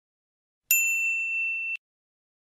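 A single bright electronic 'ding' of a notification-bell sound effect, the kind played when an animated cursor clicks a subscribe bell. It starts partway through, rings steadily for about a second and cuts off suddenly.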